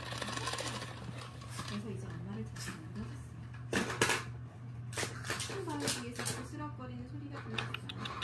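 A voice narrating a story in the background over a steady low hum, with a few sharp knocks and clicks; the loudest two come close together about four seconds in.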